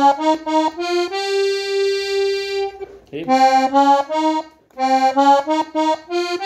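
Piano accordion's treble keyboard playing a short rising phrase of single notes (C, C♯, D♯ twice, F, G), one note held for about two seconds. The phrase is then played twice more in quick succession.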